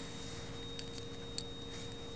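Quiet room tone: a steady faint electrical hum with a thin high whine, and two faint small ticks partway through.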